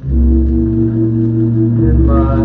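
A 1941 big-band recording playing from a 78 rpm shellac record: the orchestra comes in loudly at the start with a sustained chord over a deep bass.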